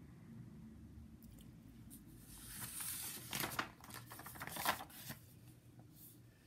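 A picture book's paper pages being turned and handled: a rustle starting about two seconds in and lasting about three seconds, with two sharper paper flaps, the second near the end.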